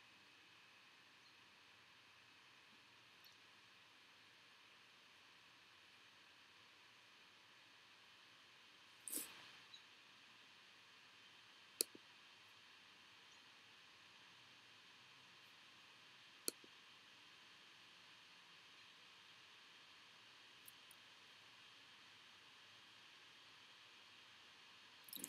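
Near silence with a faint steady hiss, broken by a few isolated sharp clicks of a computer mouse, plus a short rustle about nine seconds in.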